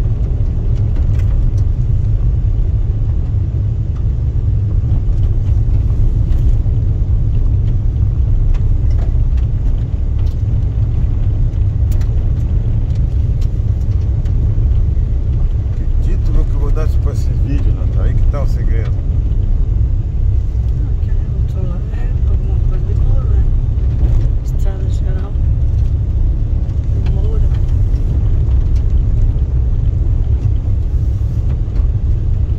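Car driving along an unpaved dirt road: a steady low rumble of engine and tyres, with scattered small clicks.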